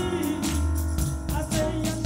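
Live gospel praise music: a woman sings into a microphone over an electric bass and drums with steady percussion hits.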